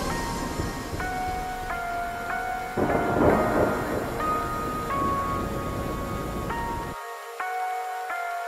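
Electronic background music at the start of a track: sparse held synth notes over a rumbling, rain-like noise bed. The bass drops out about seven seconds in, before the vocal section begins.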